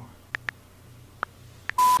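A few faint clicks of typing on a smartphone, then, near the end, a short, loud, steady censor bleep covering a spoken word.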